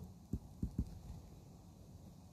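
Three faint, short, dull knocks of a stylus tapping on a tablet screen while writing, all within the first second, over a faint low hum.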